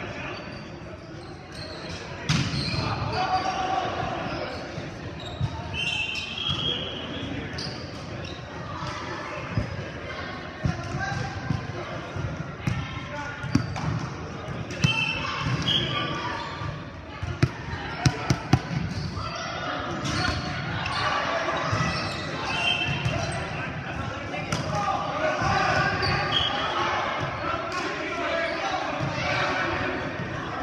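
Players' voices talking and calling out in an echoing gymnasium, with a ball bouncing on the hardwood court: a single knock about two seconds in, and four quick bounces a little past halfway.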